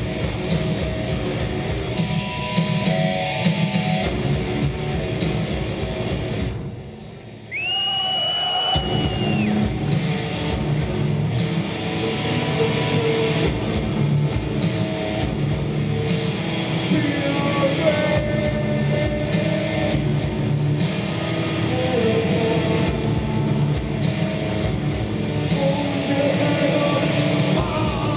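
Industrial metal band playing live: heavily distorted guitar and bass over a drum-machine beat, with shouted vocals later on. A little over a quarter of the way in, the music thins for about a second, and a high held squeal sounds briefly before the band crashes back in.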